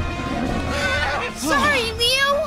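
An animated zebra character's whinny-like cry from the film soundtrack, over background music.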